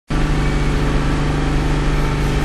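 Generator engine running steadily, a low, even hum.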